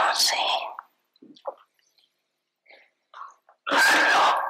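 A woman speaking slowly into a microphone in short phrases: one phrase ends about a second in, and after a pause of nearly three seconds with only faint small mouth sounds, she starts the next phrase near the end.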